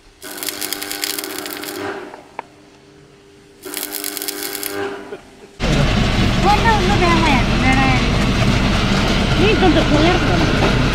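Electric arc welding on a vehicle's leaf spring: two crackling bursts of the arc, about a second and a half and a second long, over a steady hum. About five and a half seconds in, the sound cuts to inside a vehicle: loud, constant engine and road rumble with passengers talking.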